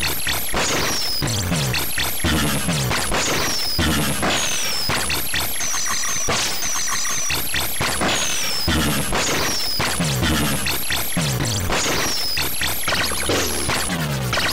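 Harsh one-bit PC-speaker music from a 16-byte MS-DOS program running in DOSBox: a buzzy square-wave drone with repeated falling pitch sweeps, about one every second or so, giving a 'wub wub' pulse.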